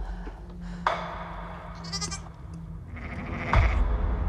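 A lamb bleating briefly, over a steady low drone. There is a sharp knock about a second in and a louder one near the end.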